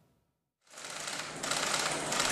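A dense run of rapid camera-shutter clicks from press photographers, starting after a brief silence about two-thirds of a second in.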